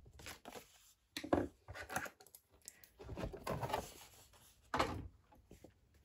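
Scoring stylus drawn along cardstock in the grooves of a paper scoring board: a few short scraping strokes, with the paper handled in between.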